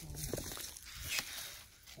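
Hand pruning shears snipping a twig on a plum tree, one sharp snip about a second in, amid the rustle of handled branches.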